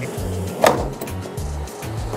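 A single sharp knock about two-thirds of a second in, over background music with a steady bass beat.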